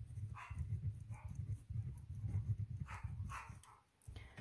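Dogs barking in the background, making a racket: a handful of short barks over a continuous low rumble.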